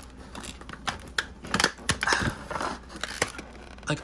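Scissors snipping the plastic ties that hold a doll to its cardboard box insert, with crinkling and scattered clicks of plastic and cardboard packaging being handled.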